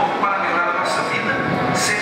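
Audio track of a promotional video playing through hall loudspeakers, heard with the room's echo and mixed with indistinct voices, at a steady level.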